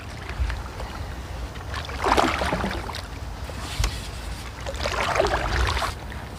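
Canoe paddle strokes pushing through water thick with giant lily pads: two strokes about three seconds apart, each a wash of splashing noise, over a steady low rumble of wind on the microphone.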